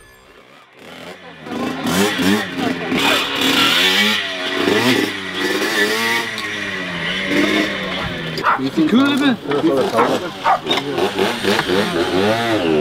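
Small two-stroke moped engines revving up and down, their pitch rising and falling over and over, with voices mixed in. A few sharp clicks come about two-thirds of the way through.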